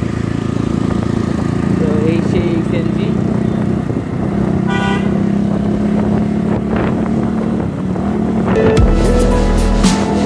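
Motorcycle engine, a Bajaj Pulsar NS160 single-cylinder, running steadily while riding in traffic. A short vehicle horn toot about five seconds in, and background music with heavy bass comes in near the end.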